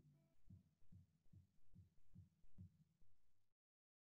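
Faint low thuds, about two a second, picked up by a stage microphone; the audio cuts off suddenly to silence near the end.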